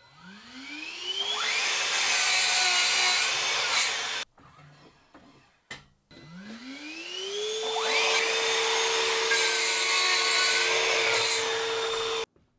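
Sliding mitre saw cutting 44 mm square pine, twice: each time the motor whines up in pitch to full speed, a rougher noise comes as the blade goes through the wood, and the sound cuts off suddenly.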